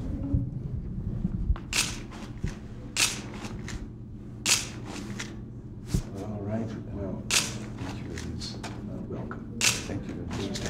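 Press photographers' still-camera shutters clicking several times at irregular intervals, a second or two apart, during a posed photo, over a low room murmur.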